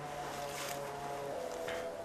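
A person's voice holding a long, level hesitation sound after trailing off mid-sentence, stopping about a second and a half in, over faint outdoor hiss.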